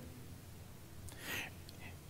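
Quiet pause between spoken phrases, with one soft breath taken into a close headset microphone about a second in.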